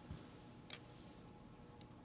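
Two small metal clicks from a telescoping bore gauge being handled against the jaws of a dial caliper: a sharp one a little before halfway and a fainter one near the end, over a very quiet background.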